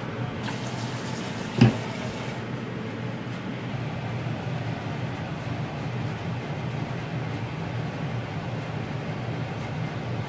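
A steady low hum, with one sharp knock about a second and a half in, then a fork quietly working a mashed-potato topping in a ceramic dish.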